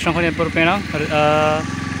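A person speaking at length, with one drawn-out word, over the steady low running of a small engine.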